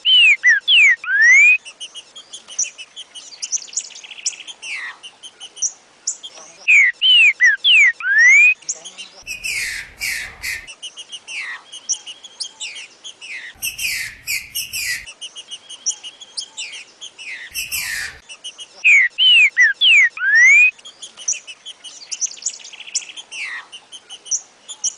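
Green-winged saltator (trinca-ferro) singing the song phrase known as "Joaquim já foi do Mineirinho": loud whistled phrases of falling and rising sweeping notes, given three times, near the start, about 7 seconds in and about 19 seconds in, over steady high bird chatter. Three rough noisy bursts come about 9, 13 and 17 seconds in.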